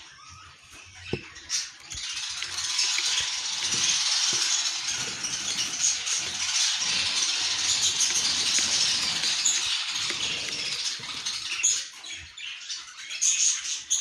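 A young budgerigar giving a long, raspy, hissing chatter that starts about two seconds in and stops about eleven seconds in, with a few short knocks before it.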